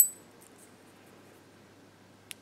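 A single light metallic clink with a brief high ring, from a spinnerbait's metal blade knocking against its wire and hook hardware as the lure is handled.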